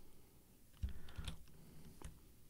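A few faint keystrokes on a computer keyboard, short clicks coming about a second in and again shortly after.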